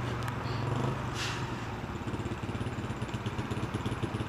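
Small commuter motorcycle's single-cylinder engine running steadily as the bike rolls slowly through traffic, heard from the rider's seat.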